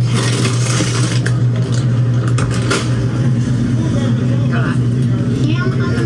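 Supermarket ambience from a phone-filmed shopping vlog: a steady low hum under a noisy background with indistinct voices.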